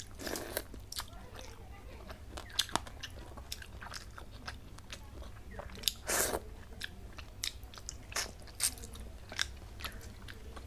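Close-up mouth sounds of eating rice and fish curry by hand: wet chewing with frequent small clicks and smacks. Louder sucking sounds come near the start and about six seconds in, as fingers go to the mouth. A steady low hum runs underneath.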